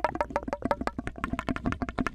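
Quick, sharp mouth clicks sent through a clear plastic tube into the ear of a binaural microphone, each click with a short hollow ring.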